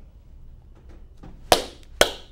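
Two sharp hand claps, one about one and a half seconds in and another half a second later at the end, over low room tone.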